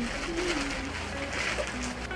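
Thin plastic mailer bag rustling and crinkling in irregular bursts as it is handled open, over background music.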